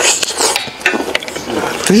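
Close-up eating sounds of a person biting and chewing meat off a braised beef rib: an irregular run of crackly clicks and smacks.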